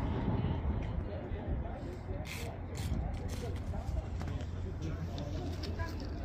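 Indistinct background chatter of people at an outdoor gathering over a low steady rumble, with a few short hissing rustles about two to three seconds in.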